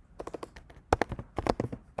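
Computer keyboard being typed on: quick key clicks in short, irregular bursts.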